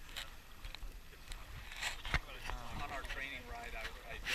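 Shallow lake water splashing and sloshing in short strokes as a person wades, with a sharp knock about two seconds in. People's voices talk in the background from about halfway through.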